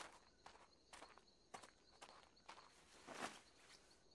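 Faint footsteps, light taps about two a second, the loudest a little after three seconds in, over a faint high repeating chirp in the background.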